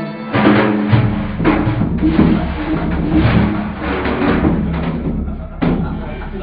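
Iranian folk ensemble playing, with hand-struck frame drums (daf) beating a rhythm under plucked strings such as the oud.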